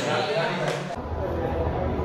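Indistinct voices in an indoor room. About a second in there is an abrupt cut to another recording, with a low rumble under the voices.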